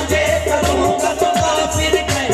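Qawwali music: a harmonium's held melody over a steady hand-drum rhythm, the drum strokes dropping in pitch.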